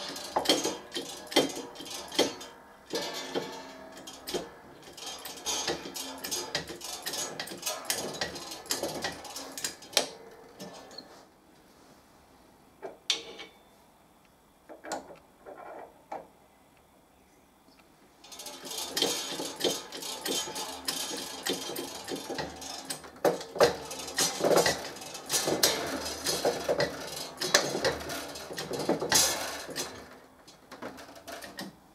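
Hydraulic shop press being worked to press a bearing onto a steel spindle: rapid, irregular metallic clicking and clatter in two long spells, with a quieter pause of a few seconds in the middle broken by a few single clicks.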